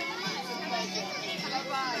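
Overlapping voices of young children and adults talking and calling out, with a brief "Okay" near the end.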